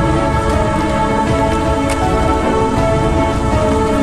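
Background music of held, sustained notes, overlaid by heavy wind buffeting and rumbling on the microphone.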